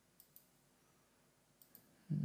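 Near silence broken by faint computer mouse clicks: a pair of clicks near the start and another pair near the end.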